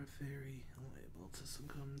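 A man's soft, quiet voice speaking close to the microphone, low and murmured.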